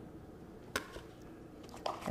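A single sharp knock about three-quarters of a second in, over quiet room tone.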